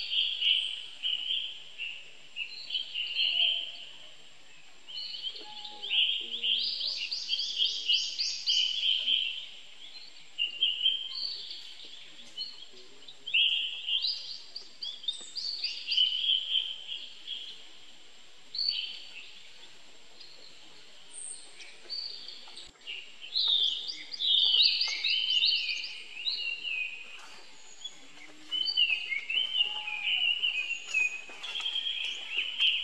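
Birds singing in short, repeated chirping and trilling phrases, one every second or two, over a faint, steady, high thin tone.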